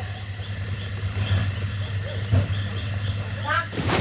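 Crickets chirping in an even rhythm over a steady low hum, with a short shouted call near the end.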